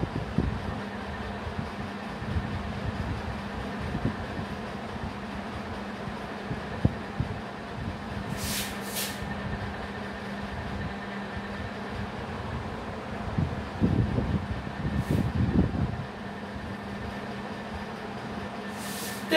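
Whiteboard marker writing on a whiteboard: scratchy strokes and a few brief high squeaks of the felt tip, twice about halfway through and once near the end. A steady low hum runs underneath.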